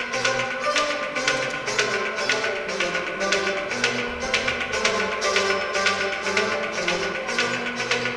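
Kashmiri Sufi music played live on a plucked rabab, a harmonium and a bowed fiddle, over hand percussion keeping a steady beat of quick, regular strokes.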